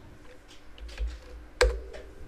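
Typing on a computer keyboard: a few light key clicks, then one louder keystroke about a second and a half in as the web address is entered.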